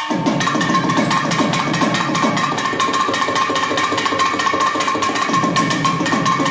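Thavil drumming in a dense, fast stroke pattern over a steady held drone tone.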